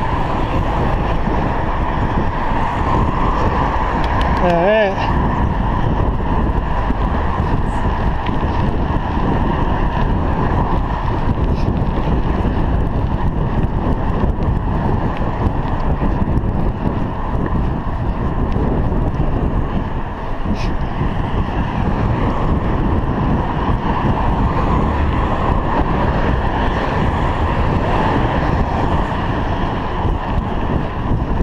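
Wind rushing over a chest-mounted action camera's microphone while riding a bicycle along a road, with traffic noise mixed in. A brief wavering pitched sound comes about five seconds in.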